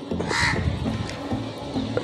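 A single short, harsh bird call about half a second in, over background music.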